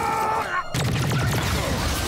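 Sci-fi film battle soundtrack: a rapid run of blaster shots and impacts over a dense low rumble, after a gliding whine in the first half second.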